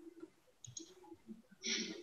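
Faint clicks through a video-call microphone: a few short clicks in the first second and a brief rustling burst near the end.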